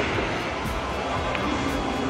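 Steady background hubbub of a busy mall hall, with music playing underneath.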